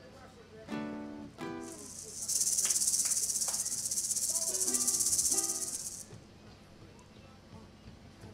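Chac-chac (maracas) shaken in one continuous high rattle for about four seconds, starting a second and a half in. Short pitched notes come just before the rattle and again under its second half.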